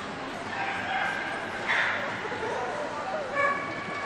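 A dog barking in a large, echoing show hall: two short barks, the first just under two seconds in and the second about three and a half seconds in, over the murmur of a crowd.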